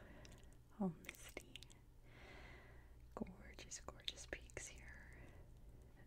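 Quiet whispering and soft mouth sounds, with a short falling vocal sound about a second in and scattered light clicks.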